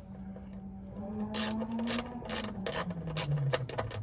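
Hand wrench ratcheting as a screw is turned in a newly set rivet nut (nutsert) in the door frame: a run of sharp clicks starting about a second in. The threads are catching and turning freely.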